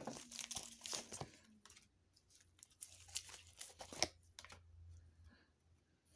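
A tarot deck being shuffled by hand: soft flutters and clicks of card stock sliding and tapping together, busiest in the first second or so, then a few scattered taps.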